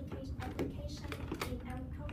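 A woman speaking, with scattered sharp clicks, like keyboard typing, among the words.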